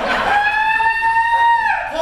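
A person's high-pitched held vocal call, about a second and a half long, its pitch rising slightly and then falling off at the end.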